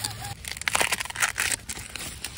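Ears of sweet corn being picked by hand, with a dense run of crackling and snapping from the stalks, husks and leaves.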